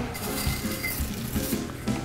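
Soft background music with a few faint steady tones, and no clear kitchen sounds above it.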